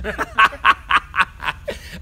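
A man laughing in a run of short bursts, about four a second.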